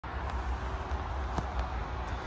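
Outdoor background noise: a steady low rumble with a faint haze of hiss above it, and a single faint click about one and a half seconds in.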